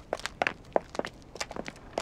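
Footsteps walking at an even pace, about three steps a second: an audio-drama sound effect of people walking over to someone.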